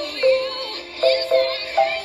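Marimba played with mallets: four struck notes, some as two-note chords, each ringing briefly. It plays along with a recording of a pop song with singing.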